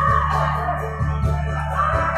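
Backing music with a steady bass beat, played loud through a PA, with a woman's amplified singing voice coming and going over it.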